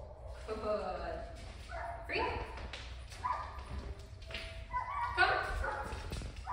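Dog yipping a few times between the trainer's spoken commands.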